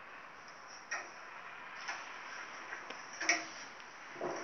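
Wall clock ticking about once a second over a steady hiss, with one louder click a little after three seconds in.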